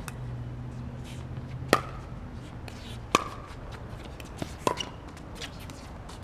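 Pickleball paddles hitting a hard plastic pickleball in a rally: three sharp pocks about a second and a half apart, the second about a second and a half after the first. Lighter ticks fall between the later hits.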